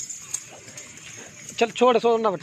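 Quiet outdoor background with a faint steady high hiss for most of the stretch, then a man's voice starts near the end.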